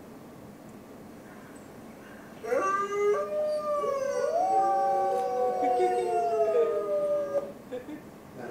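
Wolves howling: several long, overlapping howls that slide slowly in pitch, played back from a video through a lecture hall's speakers. They begin about two and a half seconds in and die away near the end.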